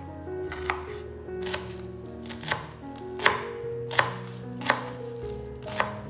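Chef's knife chopping spring onions on a cutting board: about seven separate sharp knocks, a little under a second apart, over soft background music.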